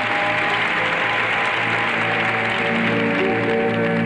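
Pairs skating program music with long held notes, under arena crowd applause that swells early on and fades toward the end, the crowd's response to a one-arm overhead lift.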